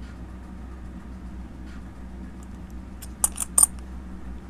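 Silver Franklin half dollars clinking against each other in the fingers: a quick run of about four light metallic clicks about three seconds in, over a steady low hum.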